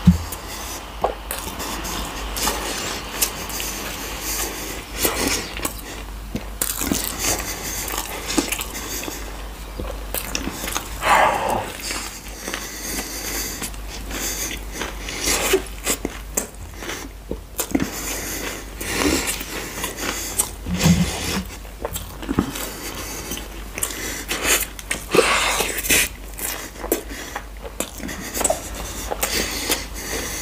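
Close-miked chewing and biting of a fried chicken burger, full of irregular clicks of mouth and food sounds.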